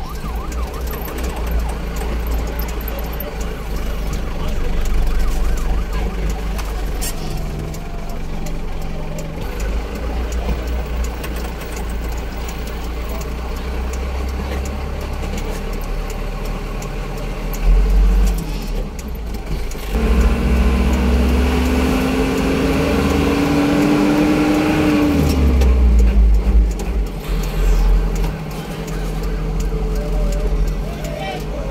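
Motor vehicle engine and road noise on a winding hill road, running steadily. About two-thirds of the way through, the engine note climbs steadily for about five seconds, then drops away quickly.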